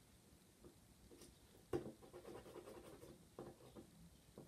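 Faint scratching of a correction pen's tip on oil-pastel-coated card, with a sharp click a little under two seconds in and a few softer taps near the end.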